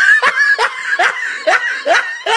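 High-pitched laughter in a quick even run of short 'ha' pulses, about two or three a second, each rising and falling in pitch.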